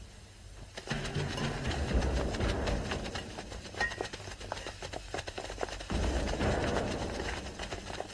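Fight-scene clatter: rapid clicking and knocking of weapons and shields with scuffling feet, over a low rumble, starting about a second in.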